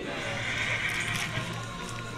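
A young horse neighing once, from about half a second to a second and a half in, over steady background music.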